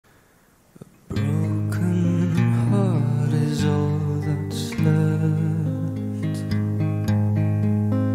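Song intro played on acoustic guitar with low sustained bass notes underneath. It starts about a second in after near silence.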